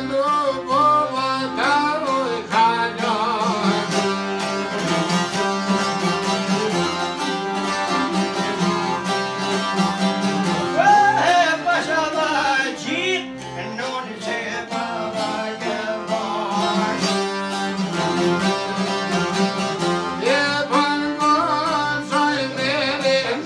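Albanian folk ensemble of long-necked plucked lutes, accordion and a bowed string instrument playing together, with a man singing an ornamented melody in phrases over it.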